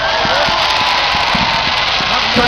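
Ground fireworks fountains spraying sparks: a loud steady hiss with scattered crackles.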